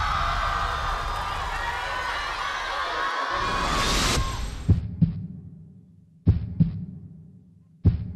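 A studio audience cheering for about four seconds, cut off abruptly; then a heartbeat-like sound effect through the stage sound system opens the routine's music, three double thumps (lub-dub) about a second and a half apart, each fading away.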